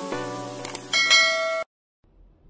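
A short music jingle of quick pitched notes that ends in a bright bell chime about a second in, then cuts off abruptly into silence.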